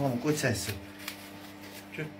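A person talking for about the first second, then a steady low hum under a quieter stretch.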